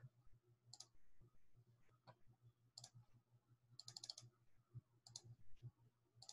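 Near silence with faint, short clicks, about one a second, over a faint low hum.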